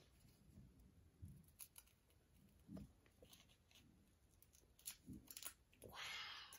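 Near silence, with a few faint scattered clicks and soft rustles of small toy pieces and wrappers being handled.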